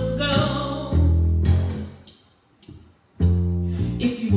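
A jazz duo of upright double bass and a woman's voice. The music dies away about two seconds in, leaving a gap of about a second, and then the bass comes back in strongly.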